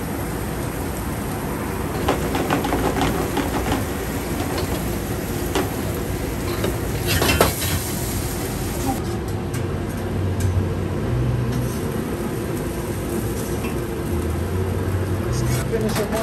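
Food sizzling in pans on a commercial gas range over a steady low rumble. Scattered clinks and scrapes of utensils on the pans are heard, the sharpest about seven seconds in.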